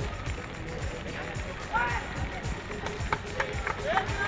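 Live pitch-side sound of a football match: players shouting, then several sharp knocks of the ball being kicked in the last second or so as a shot goes in.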